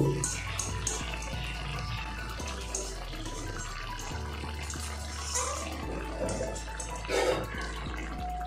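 A metal fork clicking and scraping in an aluminium karahi as soft cooked lote fish (Bombay duck) is mashed and picked over for its bones. Scattered light clicks sit over a steady low hum.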